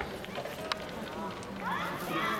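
Indistinct voices of people talking at an outdoor athletics track, with one sharp click about two-thirds of a second in and a higher-pitched voice rising in pitch near the end.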